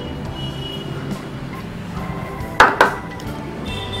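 Background music with two sharp clinks about two and a half seconds in, a small bowl knocking against a stainless steel mixing bowl as chopped ingredients are tipped in.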